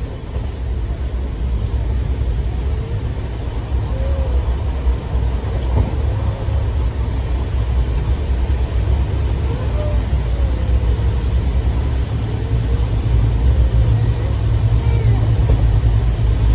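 Steady low rumble of a train in motion, heard from inside a crowded sleeper coach, with faint voices in the background.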